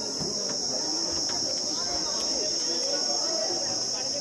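Insects singing in one steady, high, even drone, with faint voices murmuring beneath.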